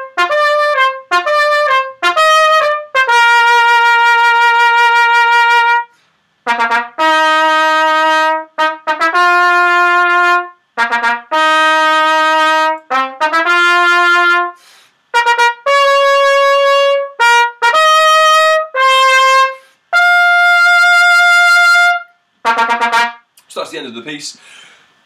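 Unaccompanied solo trumpet playing a melodic passage: phrases of quicker notes broken by short breath gaps, with several long held notes, the playing ending about a second and a half before the end.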